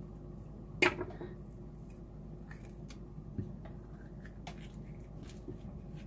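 Avocado halves handled and squeezed out over a ceramic plate: one sharp tap about a second in, then a few faint knocks and clicks, over a steady low hum.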